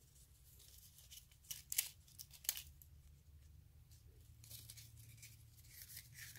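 Faint crinkling of a roll of nail transfer foil being handled and rolled back up, with a few short crackles clustered in the first half.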